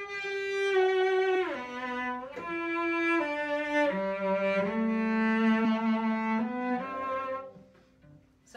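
Cello bowed in a slow phrase of about seven sustained notes, with a downward slide into the second note about a second and a half in and the longest, lowest note in the middle.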